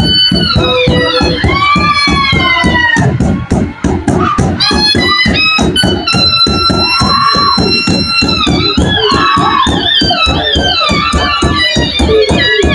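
Dhamal drumming: several large barrel drums beaten in a fast, driving rhythm, with a high wind instrument playing a wavering, sliding melody over them. The drums briefly drop away about three and a half seconds in, then come back.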